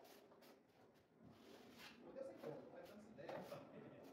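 Near silence: a few faint scrapes of a drywall taping knife worked against a mud pan, with muffled voices in the background.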